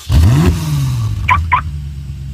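Car engine sound effect: a sharp rev up in the first half second, then the engine pitch eases slowly down. Two short high beeps come a little over a second in.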